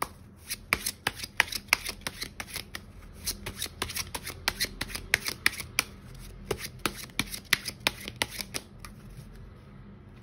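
A deck of tarot cards being shuffled by hand: a quick run of card clicks, several a second, that stops shortly before the end.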